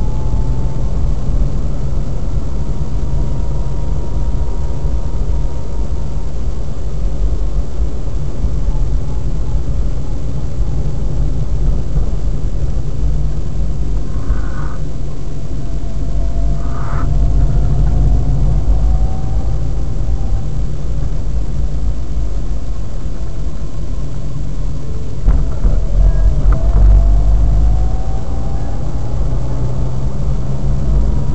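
Car engine and tyre noise from inside the cabin, a steady low rumble on a wet road. A few faint short knocks come midway, and the engine pitch rises as the car accelerates near the end.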